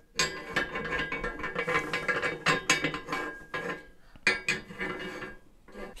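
Steel parts of a press frame clanking and clinking as they are picked up and handled, a run of knocks with short metallic ringing.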